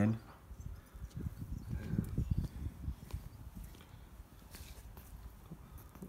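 Low, uneven rumbling of handling noise from a hand-held phone microphone as it is moved about, with a few faint clicks.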